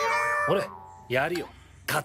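Anime soundtrack: a comic sound effect for a cutlet being flapped, which glides up in pitch and then holds for about half a second. It is followed by a short line of Japanese dialogue.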